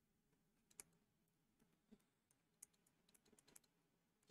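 Near silence with a few faint clicks, then a run of light ticks near the end: a stylus writing on a drawing tablet.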